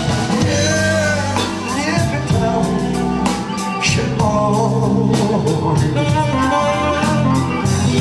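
Live band playing: tenor saxophone, electric guitar, keyboard and drum kit, with a singing voice.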